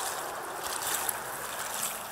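Steady wash of shallow seawater with light splashing, as someone wades through the shallows at low tide, and some wind on the microphone.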